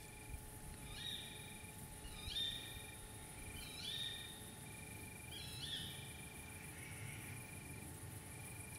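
Faint night-time chorus of insects and other small calling animals: a steady high-pitched insect buzz, a short trill repeated about once a second, and a rising chirp note every second or so.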